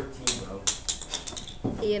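A quick series of five or so light clicks and clacks as small plastic school supplies, such as glue sticks, are handled and knocked together while someone rummages through a box of them. A voice comes in near the end.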